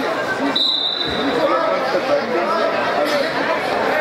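Many voices chattering in a gymnasium during a wrestling meet. About half a second in, a high steady tone sounds for about a second, and a dull thud follows just after.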